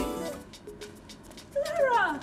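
Background music ends right at the start; then footsteps click lightly on pavement, and near the end a woman lets out a long excited cry of greeting that falls in pitch.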